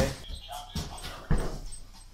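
A child's body landing on an inflatable air-track tumbling mat: one dull, sudden thump about halfway through.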